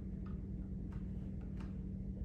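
Plastic spoon stirring thick sugar water in a glass flask, giving faint, irregular ticks as it knocks against the glass, over a steady low hum.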